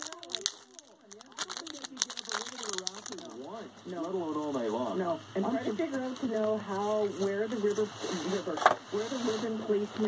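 Crinkling and tearing of a trading-card pack wrapper as it is ripped open, lasting about the first three seconds. After that, a man's voice talks steadily in the background, typical of a radio talk show.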